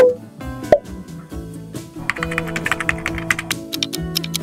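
Background music with a sharp transition sound effect at the very start and a second pop just under a second in. About two seconds in, a rapid ticking countdown-timer effect starts over the music.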